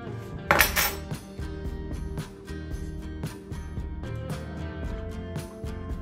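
Background music, with a small metal spoon clinking and scraping against a glass jar as mead is ladled out; the loudest clink comes about half a second in.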